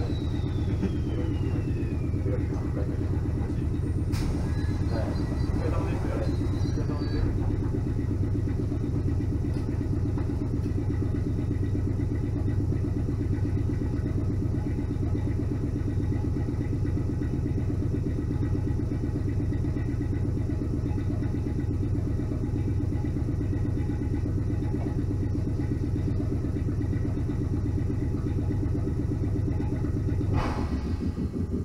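An electric train's motor whine falls away as it comes to a stop at a station in the first couple of seconds. The standing train's onboard equipment then gives a steady low hum, heard from inside the carriage, with a sharp click about four seconds in.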